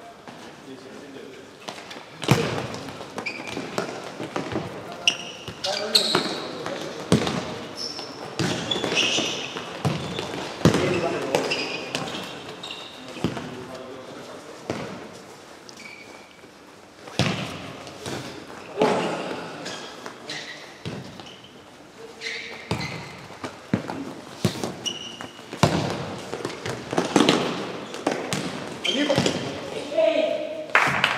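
Live futsal play on an indoor hard court: the ball is kicked and bounces on the floor again and again at irregular intervals, with players shouting to each other, all echoing in a large sports hall.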